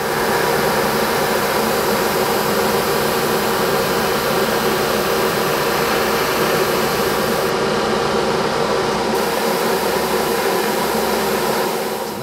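Airbrush spraying thinned acrylic paint, a steady hiss of air over a constant motor-like hum; the highest part of the hiss drops away briefly about eight seconds in.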